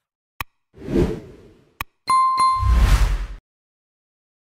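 Logo-sting sound effects: two sharp clicks around a whooshing swell with a low rumble, then a bright bell-like ding struck twice over a deep boom that ends about three and a half seconds in.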